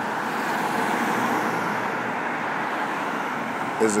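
Street traffic going by: a steady rush of car tyre and engine noise that swells slightly about a second in and then eases off, with a car passing close by near the end.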